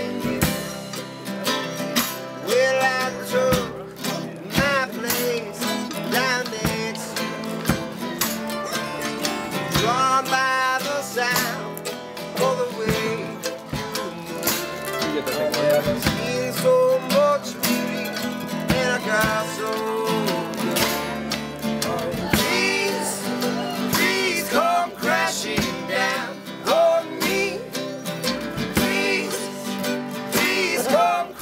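Acoustic string band playing a country-bluegrass song: acoustic guitars, mandolin and upright bass over light drums.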